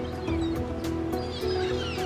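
Background music with held notes over a light ticking beat, with gulls calling over it near the end.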